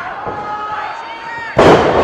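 A wrestler slammed down onto the ring mat: one loud crash of the ring about one and a half seconds in, over crowd chatter and shouts.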